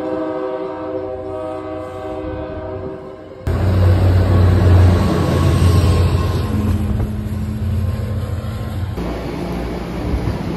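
MBTA Commuter Rail train horn sounding a steady chord that fades over the first three seconds as the train passes. Then, after a sudden cut, the loud low rumble of the diesel locomotive's engine running close by, with a steady hum over it.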